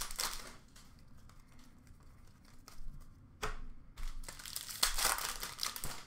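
Foil hockey card pack wrappers crinkling as they are torn open and crumpled by hand, in bursts at the start and over the last two seconds, with one sharp crackle a little past halfway.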